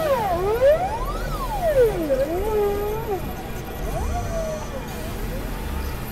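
Electronic synthesizer tones gliding up and down in pitch in sharp zigzags, several lines moving together, over a low rumbling drone. The glides are busiest in the first half and come back more faintly about four seconds in.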